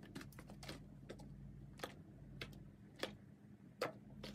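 A thin plastic bottle crackling and clicking in the hand as it is gripped, squeezed and tilted. It gives a string of sharp, irregular clicks, with a quick cluster in the first second and then one about every half second. The loudest click comes near the end.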